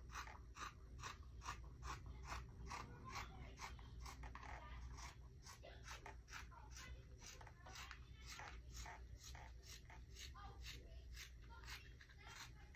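Scissors cutting through folded fabric: a steady run of quiet snips, about two or three a second, as the blades close again and again along a curved cut.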